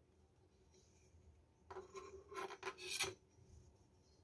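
Hand rubbing and shifting its grip on the wooden handle of a knife: a short run of scraping rubs about halfway through, the last one the loudest.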